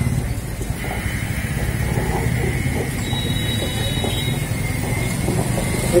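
Motor vehicle engine running steadily close by, a low pulsing rumble of road traffic, with a faint thin steady whine over it from about a second in.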